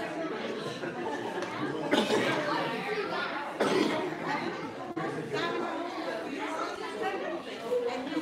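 Many people talking at once in a large hall, a steady mix of overlapping voices.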